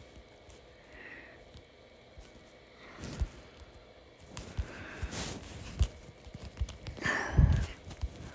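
Irregular soft taps and knocks of fingers on a tablet touchscreen while objects are dragged and resized, with a louder low thump near the end.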